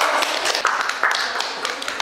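A small audience applauding: many hands clapping in a dense, uneven patter.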